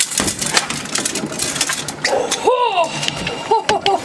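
Water splashing and a flurry of irregular knocks as a freshly hooked chinook salmon is netted and lifted aboard onto the boat's deck, followed by a whoop about halfway through.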